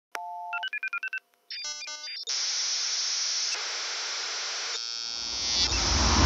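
Electronic intro sound effect: a click and a quick string of beeps at changing pitches, then a steady hiss of TV static, swelling near the end into the opening music.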